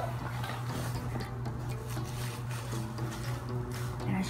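Cardboard laptop box being handled and lifted, with scattered rustles, taps and clicks over a steady low hum.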